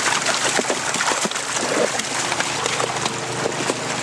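Water rushing down a metal fish-stocking chute from a hatchery truck's tank, carrying live trout, with continual splashing and many small knocks and slaps as the fish slide through.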